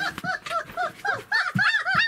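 Four-week-old German shepherd puppy yelping: a quick run of short, high cries that rise and fall, several a second.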